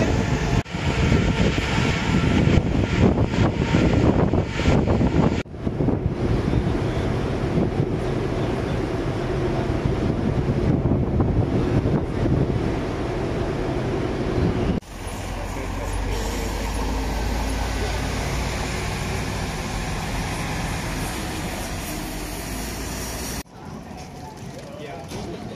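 Wind buffeting the microphone on the open deck of a cruise ferry, over a steady low rumble from the ship. The sound breaks off and changes abruptly a few times.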